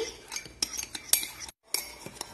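Metal spoon clinking and scraping against the inside of a ceramic mug in irregular clicks, whipping instant coffee, sugar and hot water into dalgona foam. The sound drops out briefly about three-quarters of the way through.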